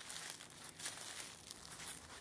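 Faint, irregular crunching and crinkling of dry fallen leaves underfoot as a person walks through leaf litter.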